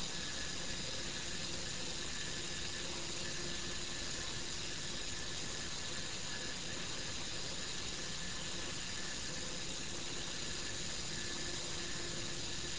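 Motorised probe carriage running steadily, a faint even hiss with a faint hum, as it drives the magnetometer probe along its rail.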